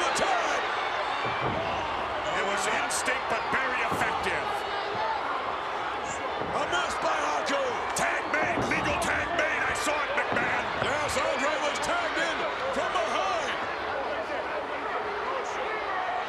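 Arena crowd shouting and cheering, many separate voices calling out. Repeated sharp thuds and smacks of wrestlers' bodies hitting the wrestling ring's mat come through over it.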